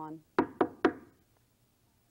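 Three quick knocks on a hard wooden bench seat, about a quarter-second apart, rapped by hand to show how hard it is.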